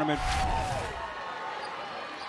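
Basketball arena ambience: a brief rushing whoosh about a quarter second in, then a steady wash of crowd and court noise.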